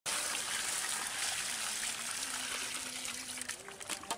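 Muddy water gushing out of a pipe in a heavy, steady rush that eases near the end, with a few sharp clicks just before it ends.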